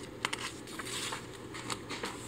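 A page of a picture book being turned by hand and pressed flat: soft, quiet paper rustling with a few light ticks.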